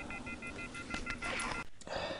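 Faint electronic beeping: a chord of high steady tones pulsing rapidly and evenly, stopping shortly before the end.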